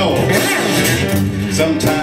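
Live blues trio playing: electric guitar over keyboards and drums, with repeated cymbal-like hits.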